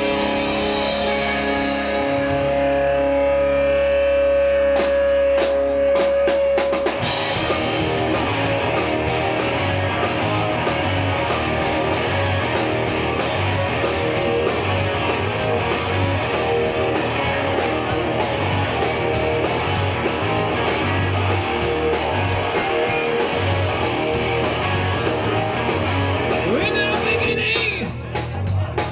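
Live rock band playing on electric guitars, bass guitar and drum kit. For the first seven seconds or so a guitar chord and a high held note ring out, then the full band comes in with a steady beat.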